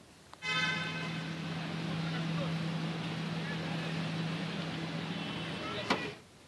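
Street ambience of idling cars and people's voices at a taxi rank, with a steady low hum that stops shortly before the end.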